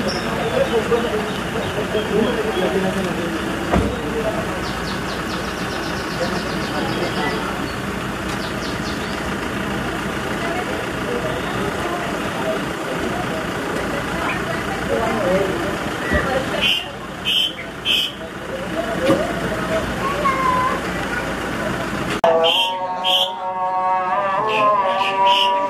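Several people talking over one another outdoors, over a steady low rumble. Near the end the sound cuts abruptly to a few held, steady tones like music.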